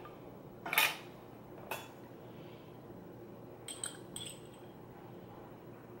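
A few light knocks and clinks of a metal fork against a small glass jar, the loudest about a second in and two bright, ringing clinks around four seconds.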